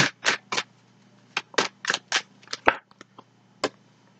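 Tarot cards being shuffled and handled as a card is drawn: about ten short, crisp card swishes and snaps at irregular intervals.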